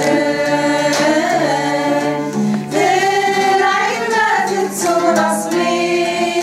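A group of women singing a Kabyle song together in unison, accompanied by a strummed acoustic guitar.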